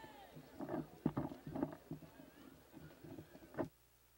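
Faint murmur of a large crowd, with scattered voices and a few knocks. The sound cuts out abruptly near the end.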